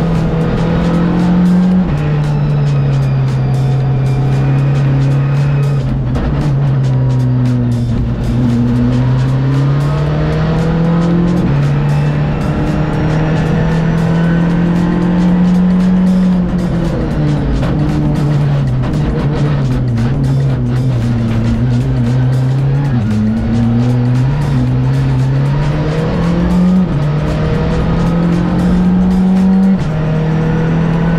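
Rally car engine heard from inside the cockpit at speed, its revs rising and falling with several abrupt gear changes.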